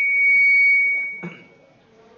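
Public-address microphone feedback: a steady high-pitched ring, loud for about the first second, then dying away.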